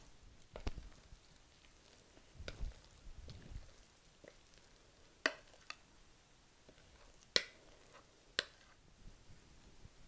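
Metal spoon scraping thick casserole batter out of a glass mixing bowl into a ceramic baking dish: soft low thuds of the batter going in, and about five sharp clinks of the spoon against the dishes, the loudest about seven seconds in.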